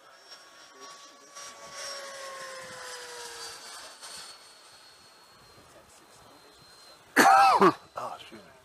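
Electric ducted-fan RC jet whining in flight, its pitch dropping slightly as it passes about three seconds in. Near the end, a brief loud vocal sound close to the microphone.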